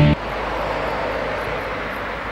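Music cuts off abruptly just after the start, leaving a steady, slowly fading distant outdoor rumble.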